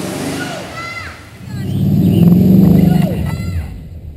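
An off-road vehicle's engine revving hard under load: it swells about a second and a half in, runs loud for a second or so, then eases off before the end. There are brief voices in the first second.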